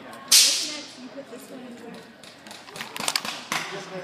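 A small wooden toy truck kit being handled: a loud, sharp scraping burst just after the start that dies away within half a second, then a quick cluster of light knocks about three seconds in.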